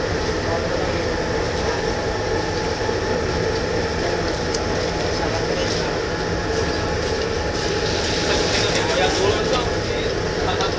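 A steady engine drone with low hum tones, running evenly throughout, with people talking in the background.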